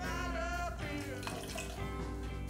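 Background music, with liquid poured from a small glass into a stainless steel cocktail shaker tin: lemon juice going in as a cocktail ingredient.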